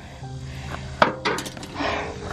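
Rusty wrought-iron plant stand being handled: a sharp metallic clink about a second in and a few lighter clinks after it, over steady background music.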